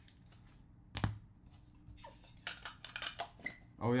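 Clear plastic trading-card holders clicking and knocking as cards are handled and set down in a row: one sharp click about a second in, then a quicker run of small clicks and light rustling.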